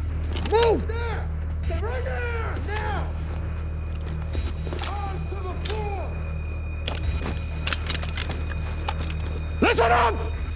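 Men's voices shouting short commands in brief bursts, loudest near the end, over a steady low hum.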